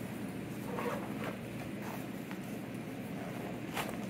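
Zipper of a Gator GPA-Tote12 padded fabric speaker tote being drawn closed in short, faint pulls with fabric handling. The sharpest zip stroke comes near the end.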